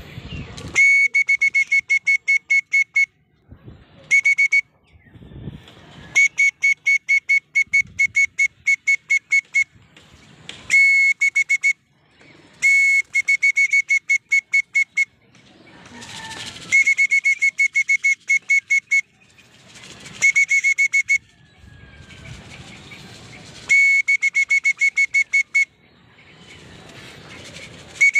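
A whistle blown in repeated trills: rapid pulses, about six a second, at one steady high pitch. It comes in bursts of one to three seconds with short pauses between.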